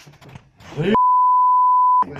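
A man's voice for about a second, then a steady single-pitch censor bleep for the remaining second, cutting off abruptly.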